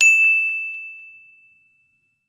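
Notification-bell sound effect: a single bright ding that rings and fades away over about a second and a half.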